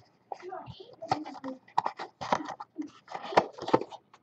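Trading card packs being handled: foil pack wrappers crinkling and cards clicking against each other in irregular short crackles, with faint low muttering.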